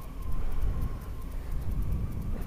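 Honda Hornet 900 motorcycle's inline-four engine running at low speed, a steady low rumble.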